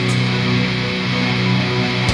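Distorted electric guitar, an SX Furrian Telecaster copy with single-coil pickups, holding a low sustained drone chord in slow drone-doom metal, struck again just after the start.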